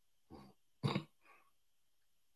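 Two short wordless vocal sounds from a man, the second, about a second in, louder and brighter than the first.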